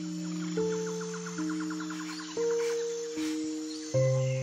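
Soft, slow background music of held notes that step to new pitches every second or so. Over the first half runs a faint rapid chirping, about nine pulses a second.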